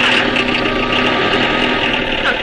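Police van engine running steadily.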